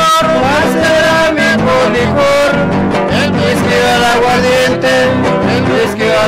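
A trío huasteco playing live huasteco music: violin carrying a sliding melody over a steady strummed accompaniment of jarana and huapanguera.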